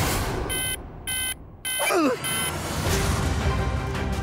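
Digital alarm clock beeping four times, about two beeps a second, followed by a groggy groan of waking up.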